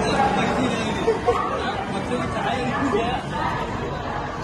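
Several people's voices chattering over one another, passengers crowding a train doorway as they board.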